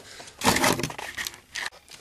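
Handling noise from a handheld camera being moved and set down: a burst of rustling and scraping about half a second in, then fainter scuffs.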